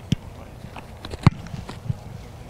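A football punt: a few light steps, then the single sharp impact of the punter's foot striking the ball about a second and a quarter in.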